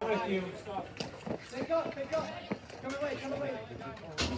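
Voices of players and onlookers at a dek hockey game, with two sharp clacks of stick and ball about a second and two and a half seconds in.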